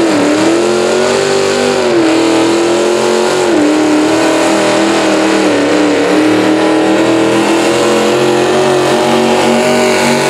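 Antique tractor's V8 engine running at high revs under full load as it drags a weight-transfer pulling sled. Its pitch dips briefly near the start and again about three and a half seconds in as the engine bogs and recovers, then holds fairly steady.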